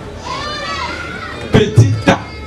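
A child's high-pitched voice calls out in the background in one long rising-and-falling arc, then a man's loud voice breaks in briefly near the end.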